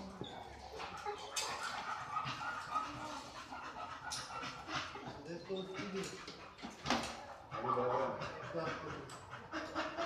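A dog panting, with people chatting indistinctly in the background.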